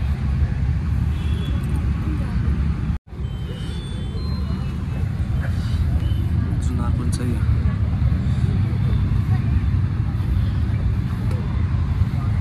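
Steady low rumble with faint, indistinct voices of people talking in the background. The sound cuts out completely for an instant about three seconds in.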